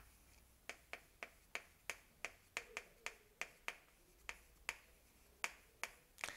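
Chalk clicking against a blackboard while writing: a run of short, sharp taps, roughly three a second, unevenly spaced.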